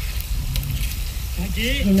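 Fish sizzling as it fries in hot oil, with a voice starting to speak near the end.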